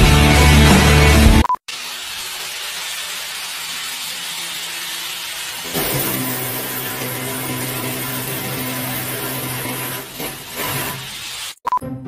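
Background music for the first second and a half. After that comes a steady, noisy grinding for about ten seconds, from a power tool on a tall wooden pole working against a concrete ceiling. A steady droning tone joins it about six seconds in.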